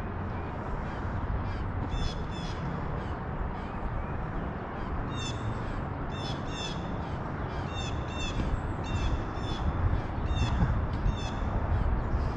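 A bird calling over and over in short, high, clear notes, about two a second, starting a second or two in and coming thickest in the second half. A steady low background rumble runs underneath.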